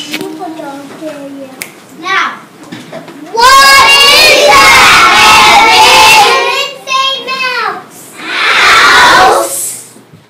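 Young children's voices: soft talking for the first few seconds, then loud, high-pitched child voices for about three seconds from three and a half seconds in, and again briefly near the end.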